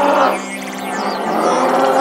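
A growling dinosaur roar sound effect, twice, a short one then a longer one, laid over synthesizer background music.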